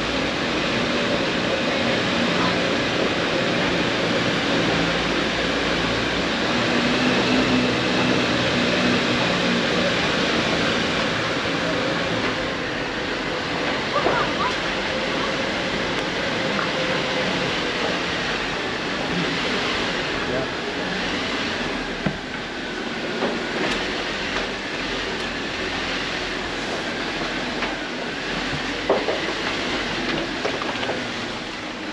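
Lifted Jeep on 37-inch tyres driving slowly: engine running steadily and tyres crunching over rocky ground, with a few sharp knocks from stones, about 14, 22 and 29 seconds in.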